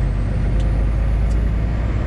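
Semi-truck's Cummins ISX diesel engine running as the truck pulls away, heard inside the cab as a steady low rumble.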